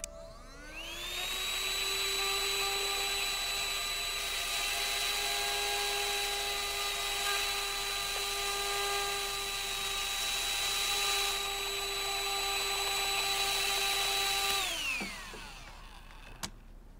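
Laptop CD drive motor spinning up with a rising whine about a second in, running at a steady high-pitched whine, then winding down with a falling pitch shortly before the end.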